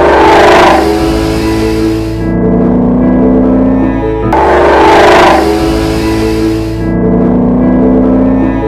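Background music: a repeating phrase of sustained pitched notes with a bright, loud hit at its start, coming round again about four seconds in.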